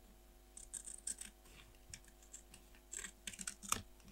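Small scissors snipping through paper in quick runs of short, crisp cuts, starting about half a second in and loudest just before the end.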